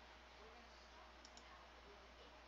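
Near silence with a faint computer mouse click, two quick ticks close together a little over a second in, over a low steady hum.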